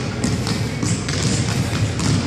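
Basketball dribbled on a hardwood gym floor: a run of low, short bounces ringing in a large hall.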